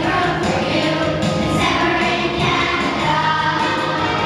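Children's choir singing together, a steady sustained song.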